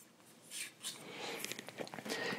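Faint scratchy rubbing of a cotton swab worked inside the end of a carbon arrow shaft, starting about half a second in, with a few small clicks from handling the shaft. The dry side of the swab is wiping out the alcohol and carbon dust.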